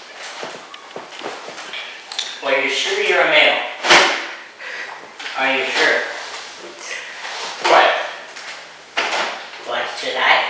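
Indistinct voices in short bursts, with a single sharp knock about four seconds in.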